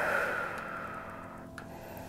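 A woman's long, audible out-breath through the mouth, a sigh that starts suddenly and fades away over about a second and a half, taken while holding a seated forward-fold stretch.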